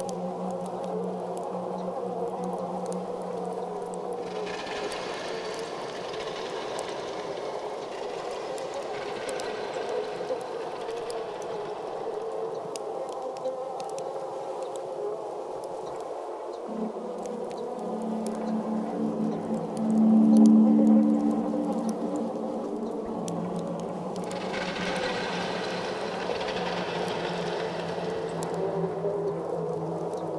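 Ambient drone soundtrack of layered sustained tones. A brighter, hissing upper layer fades in twice, and a low hum swells to its loudest about twenty seconds in.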